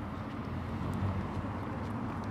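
Steady low rumbling background noise with a faint low hum, without distinct events.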